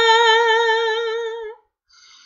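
A woman's unaccompanied singing voice holding one long note with a slight vibrato, fading and breaking off about a second and a half in.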